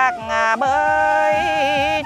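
Transverse flute playing a slow folk melody in long held notes, each with a wide, wavering vibrato; a short break in the line comes just after the start.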